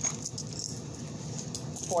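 A plastic bag is handled, with faint rustling and light clicks and a sharper click at the very start as things are pulled out of it.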